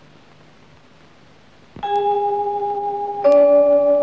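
Faint hiss and hum of an old film soundtrack, then about two seconds in a bell-like struck note rings on. A louder struck chord of several ringing notes joins it a second and a half later, opening the song's instrumental music.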